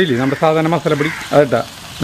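Beef frying in a pan with a steady sizzle, under a person talking.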